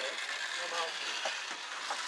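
Vintage kit-built slot cars running around the track during a race, a steady whir of their small electric motors, under faint voices in the room.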